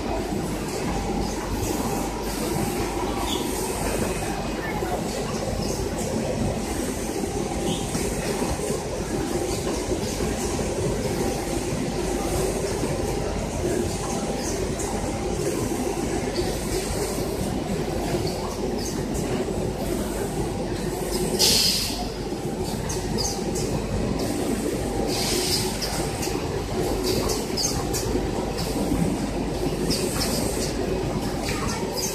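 Semi-automatic pet underpad packaging machine running: a steady mechanical rumble and clatter from its conveyor and bagging mechanism. A few short hisses cut through, the loudest about 21 seconds in.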